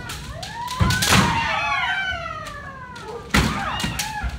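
Kendo kiai shouts: several practitioners' long, drawn-out calls overlapping, their pitch sliding and falling. Sharp bamboo shinai strikes and stamping footwork (fumikomi) on the wooden floor cut in twice about a second in and once past three seconds.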